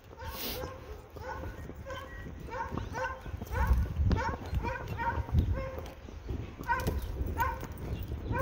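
Dogs barking in a steady run of short, yappy barks, two or three a second.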